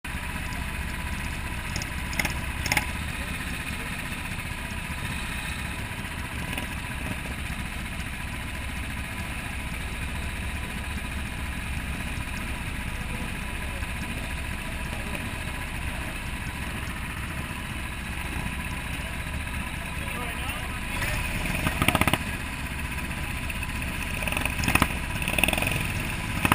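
Go-kart engines running steadily on the grid, with indistinct voices; a few louder bursts near the end.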